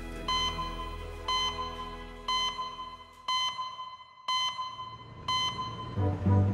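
An electronic beep repeating evenly once a second, six short beeps in a row, over soft music that fades out about halfway through.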